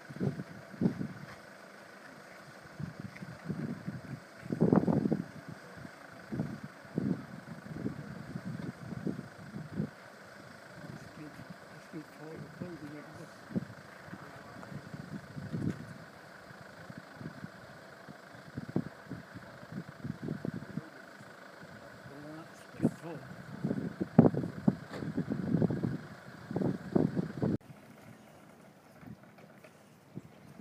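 Indistinct, muffled voices in short irregular bursts over a faint steady hiss.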